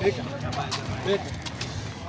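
Faint voices with a low steady hum underneath and a few brief clicks.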